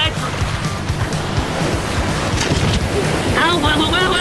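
Ocean surf breaking and rushing around a tandem kayak, under background music, with a voice shouting near the end.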